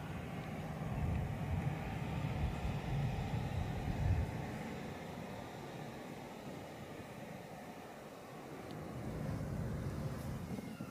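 Wind buffeting the microphone outdoors: a low, uneven rumble that swells during the first four seconds and then eases, over a faint steady hiss.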